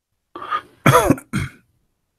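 A man coughing and clearing his throat in three quick bursts, the middle one the loudest.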